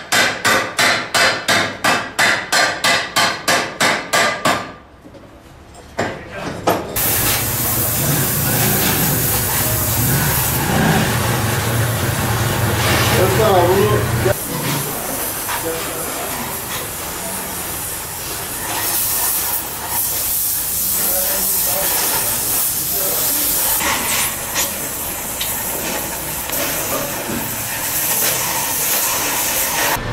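Rapid hammer blows on metal, about sixteen evenly spaced strikes over four and a half seconds. After a short pause comes a loud, steady hiss, typical of a gas cutting torch working on a steel exhaust pipe.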